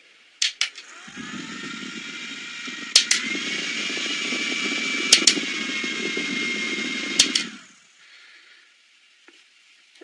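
Small USB clip-on fan for a Peloton bike being cycled through its speeds with clicks of its power button: it whirs up with a rising whine about a second in, runs louder after a click near three seconds, and after a final click about seven seconds in it is switched off and whirs down.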